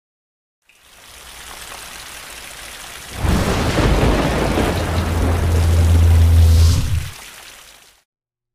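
Logo-intro sound effect: a rain-like hiss fades in about a second in, swells about three seconds in into a loud, deep thunder-like rumble over a steady low drone, then dies away near the end.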